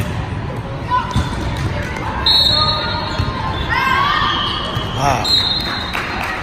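Indoor volleyball play in a large gym: sharp slaps of the ball being hit, players calling out with one rising shout, and two short, steady referee whistle blasts, one about two seconds in and one near the end.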